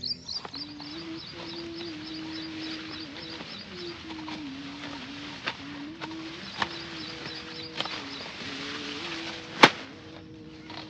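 Sharp snaps of a hand sickle cutting through green fodder stalks, four strokes, the last near the end the loudest. Behind them, a bird chirps in quick repeated notes.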